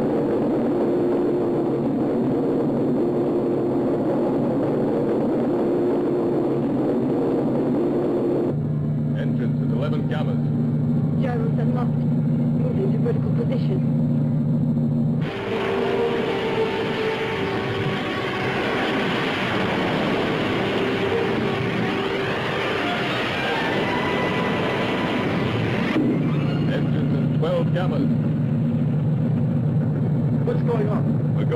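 Electronic spaceship-engine hum from a 1960s science-fiction film soundtrack, a steady drone of held low tones. It shifts to a new pitch pattern three times.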